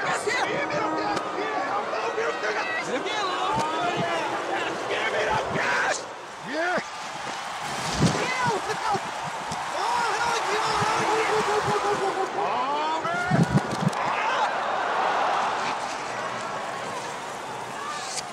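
Baseball-stadium crowd noise and shouting voices played backwards, so that no words can be made out. A couple of sharp knocks stand out, the loudest about eight seconds in and again about thirteen seconds in.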